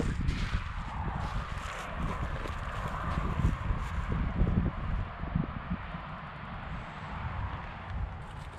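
Footsteps on dry, mown grass stubble, with irregular soft thuds, and a low rumble of wind on the microphone.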